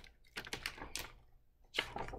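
Hardcover picture book being handled and its cover opened: several short clicks and rustles of the board cover and paper.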